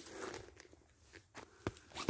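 Faint footsteps of a person in sandals walking through forest leaf litter, with scattered crackling and a few sharp clicks in the second half.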